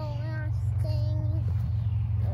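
A young girl's voice singing two short notes: the first slides up into pitch, the second is held flat for about half a second. A steady low rumble runs underneath.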